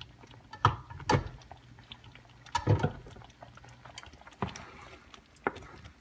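Thick red chili sauce heating on high in a frying pan, with scattered sharp knocks and plops, about five over a few seconds.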